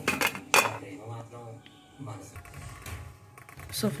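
Metallic clinks of a stainless steel flat grater against a steel plate while carrot is grated, with one sharp knock about half a second in, then quieter.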